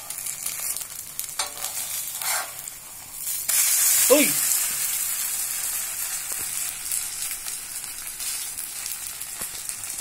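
Adai batter sizzling in ghee on a hot dosa tava, with a steel spatula scraping across the pan. The sizzle gets louder about three and a half seconds in, and there is a short falling tone just after.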